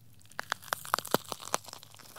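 Title-card transition sound effect: a quick, irregular run of sharp crackling clicks, about a dozen in a second and a half, fading away near the end.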